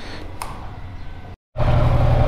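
Yamaha R15 V3's single-cylinder engine idling with an even low rumble, a click about half a second in. It cuts out for a moment about a second and a half in, then comes back much louder.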